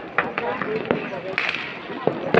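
A few sharp cracks of firecrackers going off in the distance, scattered irregularly over faint background voices.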